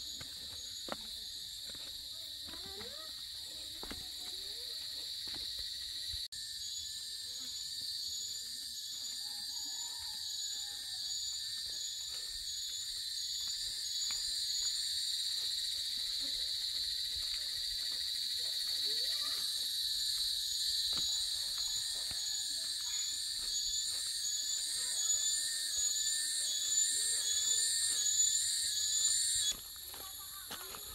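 A chorus of insects: a steady high-pitched drone with a faster pulsing call above it, growing louder in the second half and cutting off sharply just before the end.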